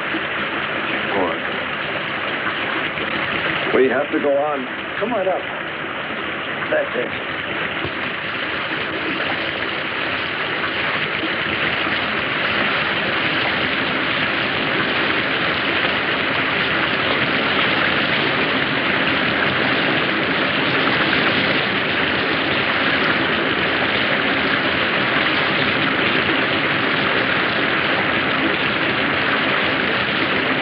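A steady rushing noise of heavy rain and running water, the sound of a downpour threatening to flood the ground. It swells louder about eight seconds in and then holds. A few brief voice sounds come in the first seven seconds.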